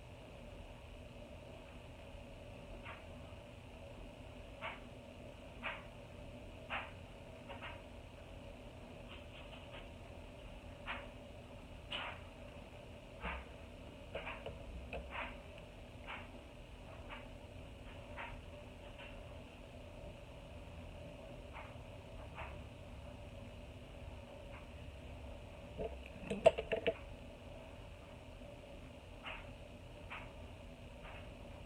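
Quiet room tone with a steady low hum, scattered faint ticks about once a second, and a short cluster of louder clicks about 26 seconds in.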